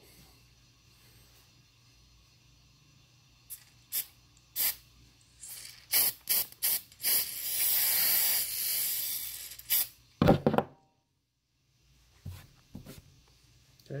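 A few clicks and taps, then an aerosol can of 3M general-purpose spray adhesive hissing steadily for about two and a half seconds as glue is sprayed onto a tape ear post. Two loud knocks follow.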